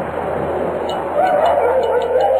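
Wolf howl sound effect: a long, wavering howl that comes in a little over a second in, over a steady rushing background noise.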